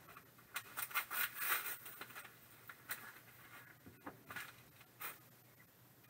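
A padded paper envelope rustling and crinkling in the hands as it is opened, with scrapes and small clicks as a plastic graded-card slab is drawn out. The handling is busiest in the first two seconds, then thins to scattered rustles and ticks.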